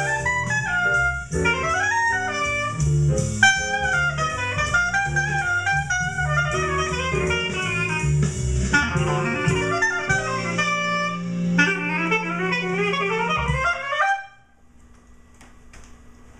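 Clear Buffet B12 B-flat clarinet playing a jazz solo with runs of quick notes over a backing track with a bass line. The solo ends on a quick rising run and the music stops about two seconds before the end, leaving faint room noise with a few small clicks.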